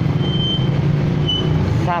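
Road traffic: a vehicle engine running with a steady low drone, with a few short high-pitched tones over it. A man's voice starts near the end.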